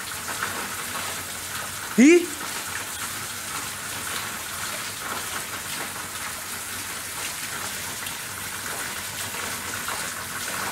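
A steady, even hiss, with one short, rising vocal sound from a person about two seconds in.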